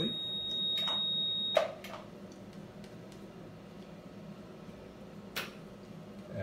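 An electronic beep, one steady high tone lasting about a second and a half, cut off by a sharp click. Another click comes about five seconds in.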